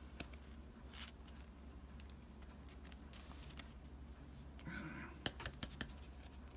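Baseball cards being handled and sorted by hand: scattered light clicks and rustles of card stock, coming more often in the last couple of seconds, over a low steady hum.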